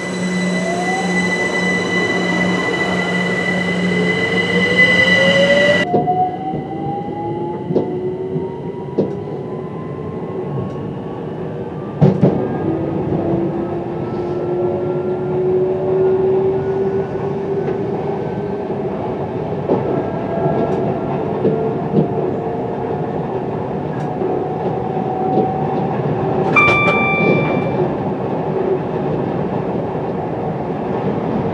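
Electric multiple unit's traction motors whining, their pitch rising slowly as the train gathers speed, over a steady wheel-on-rail rumble with scattered clicks and a knock about twelve seconds in. For the first few seconds a steady electrical hum sounds along with it, then stops abruptly. Near the end a brief, steady high-pitched tone sounds for about a second and a half.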